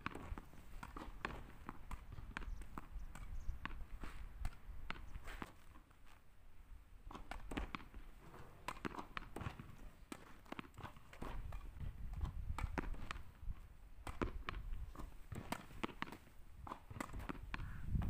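Tennis ball being hit against a practice wall: an irregular string of sharp pops from the ball leaving the racket strings, thuds off the wall and bounces on the asphalt court, with footsteps between shots.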